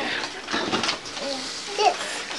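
Low, murmured voices in a small room, with a child's short vocal sound near the end and a few light knocks.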